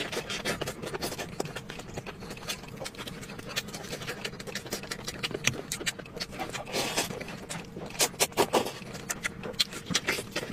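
Close-miked eating: chewing braised beef rib meat with wet smacking and quick clicks of the mouth, and a slurp of noodles about six to seven seconds in.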